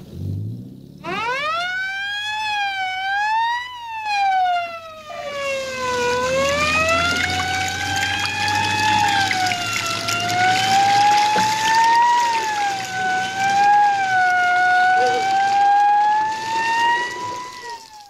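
Emergency vehicle siren wailing, its pitch rising and falling slowly and unevenly, starting about a second in and dying away near the end. A steady rushing noise runs beneath it from about five seconds in.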